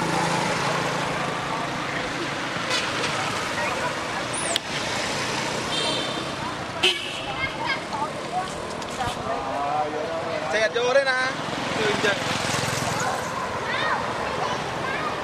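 Busy outdoor background of distant people's voices over steady vehicle traffic, with a few short high-pitched wavering calls.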